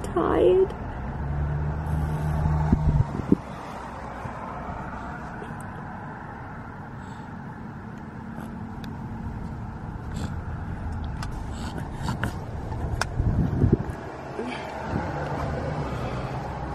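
Steady hum of a car heard from inside the cabin as it drives slowly, with a baby's brief whimper right at the start and a few light clicks later on.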